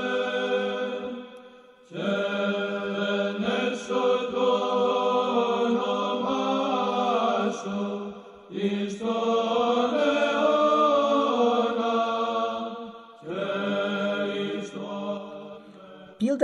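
Slow religious chant sung in long held phrases, with short breaks about two, eight and a half and thirteen seconds in, growing quieter near the end.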